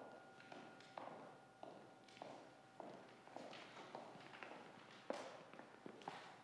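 Footsteps of two people walking at an even pace on a hard floor, about two steps a second. Under them the ring of a struck bell dies away in the first half.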